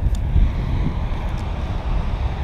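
Wind buffeting the microphone: an uneven low rumble over a steady outdoor rushing noise.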